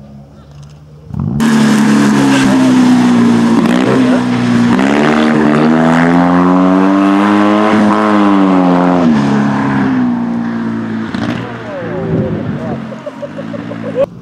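Rally car engine at high revs, cutting in suddenly about a second in. The pitch climbs and drops as the driver works through the revs, then fades near the end.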